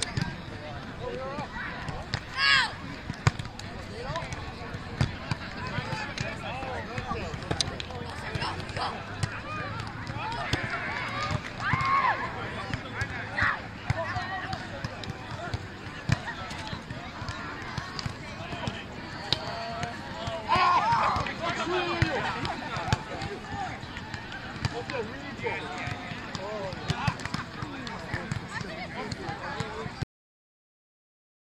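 Indistinct voices of players and people around them at a beach volleyball game, with short sharp smacks from time to time, typical of hands hitting the volleyball, over steady outdoor background noise.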